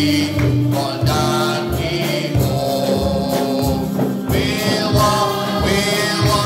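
Gospel hymn sung by a male song leader into a microphone, joined by other voices, over accompaniment with a steady beat.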